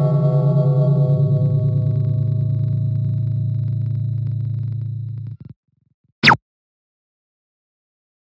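A single sustained, wavering musical tone, gong-like in the tags, fading slowly and cutting off abruptly about five and a half seconds in. About a second later comes one brief swish falling in pitch.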